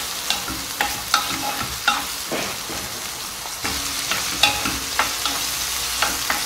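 Diced chicken breast, onion and green pepper sizzling as they fry in oil in a frying pan, while a wooden spoon stirs them, knocking and scraping against the pan in irregular sharp clicks.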